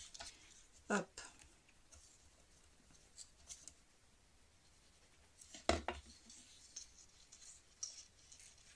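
Faint handling of cardstock: light rustling and scraping of card and a glue bottle's tip against paper as glue is put on the tabs of a small card box, with two sharper taps, one about a second in and one near six seconds.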